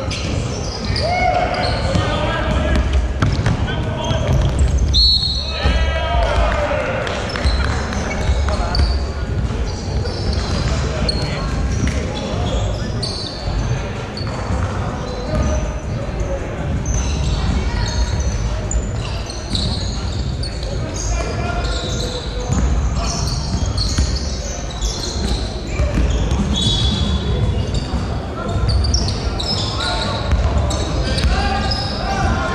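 Basketball game play on a hardwood court in a large hall: the ball bouncing amid players' shouts and calls, echoing. A short high whistle about five seconds in.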